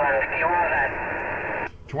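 A distant station's voice received over an 11-metre CB radio: thin, narrow-band and buried in static hiss, too garbled to make out. It cuts off suddenly near the end as the transmission drops.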